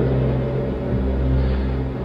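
A steady low engine drone with no breaks or changes in pitch.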